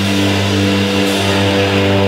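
Rock band playing live, with distorted electric guitars and bass holding one sustained chord.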